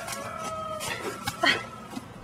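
Clucking calls of domestic fowl, with a short rising cry, the loudest, about one and a half seconds in.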